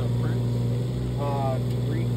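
Excavator's diesel engine running steadily at one unchanging pitch, a constant low hum.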